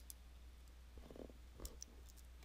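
Near silence broken by a few faint computer keyboard and mouse clicks: one at the start and a couple more past halfway, with a soft low rumble about a second in.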